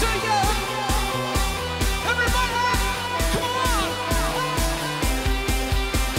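Pop-rock band music: a singing voice over electric guitar and a steady drum beat.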